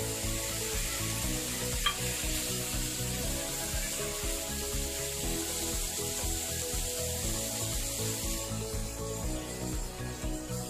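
Shrimp sizzling steadily in butter in a nonstick pan while a wooden spatula stirs and scrapes them around. There is a single sharp click about two seconds in.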